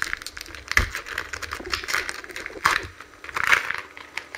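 Foil wrapper of a Japanese Pokémon booster pack crinkling in irregular bursts as it is handled.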